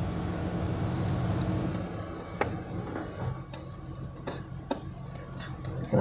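Steady low hum of a running vehicle heard inside its cabin, growing quieter after about two seconds, with a few scattered light clicks and knocks as someone moves into a seat.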